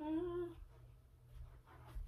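A girl's short hummed "uh", about half a second long and steady in pitch, followed by faint soft rustles and knocks.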